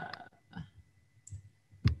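A single sharp click near the end, with a few faint small ticks before it.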